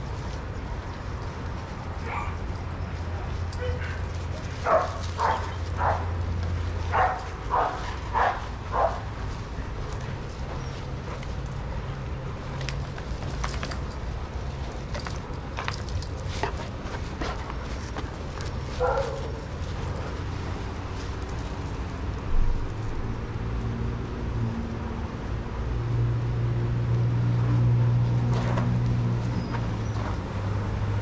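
Dogs barking in play: a quick run of about seven sharp barks between about five and nine seconds in, and a single call a little later. A steady low rumble runs underneath and grows louder near the end.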